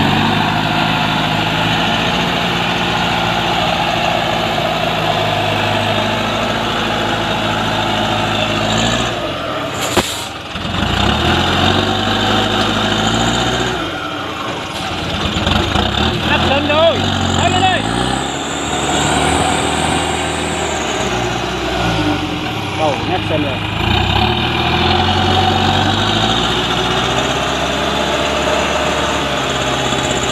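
Heavily loaded Chiến Thắng truck's engine labouring up a muddy slope. It runs steadily at first, then revs rise and fall again and again as the rear wheels churn and dig into the mud.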